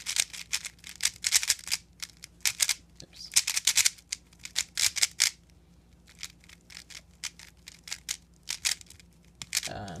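Plastic 3x3 speedcube being turned fast through a last-layer algorithm that includes middle-slice turns: quick bursts of clicking layer turns with short pauses between them. The clicks thin out after about halfway.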